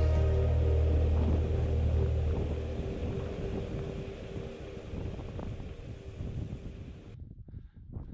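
Background music: a held, drone-like chord over deep bass. The bass drops out about two and a half seconds in and the rest fades away gradually.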